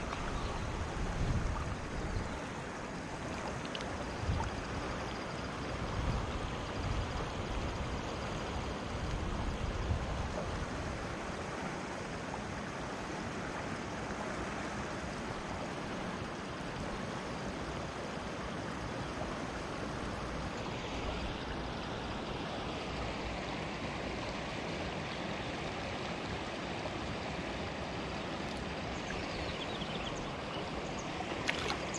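Shallow river water flowing over stones: a steady rush, with irregular low rumbles through roughly the first ten seconds.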